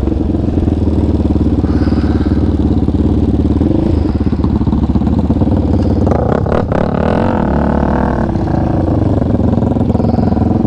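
Yamaha Raptor 700 ATV's single-cylinder four-stroke engine running under throttle on a trail ride. Between about six and seven seconds in, a higher engine note and some clattering join in.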